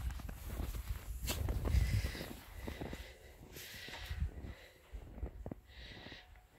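Irregular crunching steps in snow as a Labrador puppy bounds through it, over a low rumble, busiest in the first two seconds and thinning out after.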